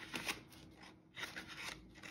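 Paper envelope and dollar bills rustling and crinkling as cash is handled and slid in, in two short bursts, the second a little longer.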